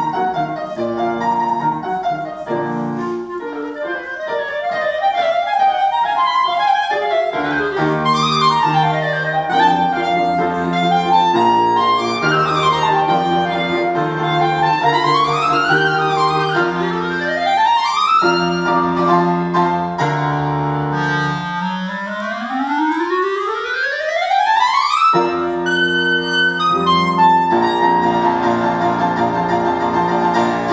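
Clarinet and piano playing a classical theme-and-variations piece: the clarinet plays fast running scales that sweep up and down over piano chords, closing with one long rising run and held notes near the end.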